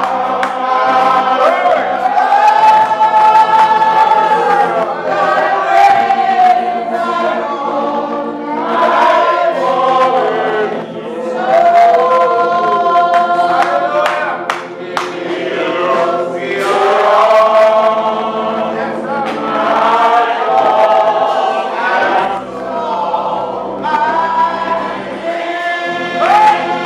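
A congregation singing a slow gospel song together in chorus, voices holding long notes.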